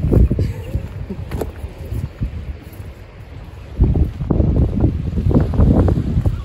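Wind buffeting the microphone, a deep rumble in two gusts: one over the first second and a half, the other building from about four seconds in, with calmer noise between.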